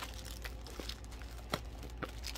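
Faint crinkling of plastic packaging being handled, with two light ticks about half a second and a second and a half in.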